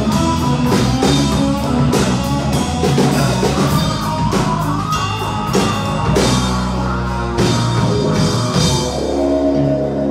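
Live country-rock band playing an instrumental passage: electric guitar chords and bass over a steady drum-kit beat, with no singing. Near the end the drum hits thin out and held chords ring on.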